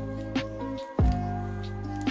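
Background music of held tones over a beat, with a loud low drum hit about a second in.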